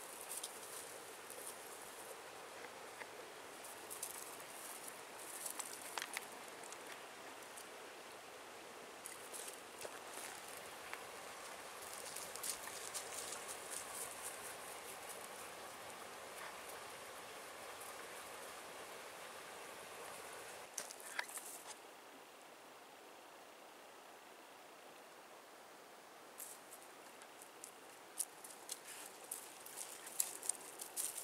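Faint rustling of dry leaf litter with scattered small twig snaps and crackles as Italian greyhounds move through forest undergrowth. The rustling drops away for a while about two-thirds of the way in, then the crackles pick up again near the end.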